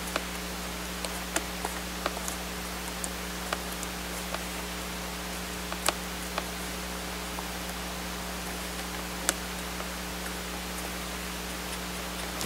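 Scattered small clicks and taps as the rear cabinet of a Panasonic Toughbook CF-19 is pressed onto the laptop's underside, the sharpest about six seconds in and again just past nine seconds, over a steady hiss and hum.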